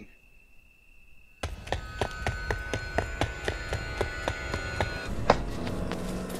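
Horror-film score: a faint high steady tone, then about a second and a half in a sudden droning chord with a quick run of sharp knocks. It ends in one loud hit near the end.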